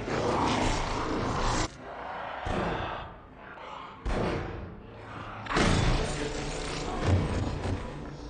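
Film soundtrack sound effects: heavy thuds and noisy rumbling that break off sharply about a second and a half in and come back loud about five and a half seconds in.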